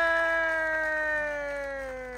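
A single voice holding a long drawn-out 'yeee' through the stage sound system, slowly sliding down in pitch and fading.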